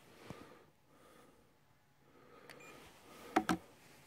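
Two sharp plastic knocks in quick succession about three and a half seconds in, as a handheld infrared thermometer is set down on a board, with a faint click near the start and otherwise near quiet.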